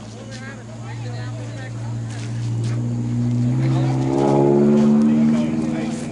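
A motor vehicle engine running and speeding up: a steady low hum that grows louder and rises slightly in pitch, loudest about four to five seconds in, then easing off.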